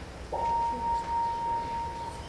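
A single steady, pure high-pitched tone starts about a third of a second in and holds unchanged for well over a second, over low hall noise.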